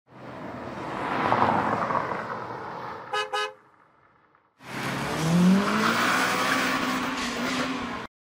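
Cartoon car sound effects: a car rushing past, then two short horn toots about three seconds in. After a brief pause, a louder rush with a rising engine note, like a car revving and pulling away.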